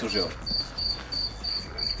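Insect chirping, probably a cricket: a short high chirp repeated evenly about three times a second.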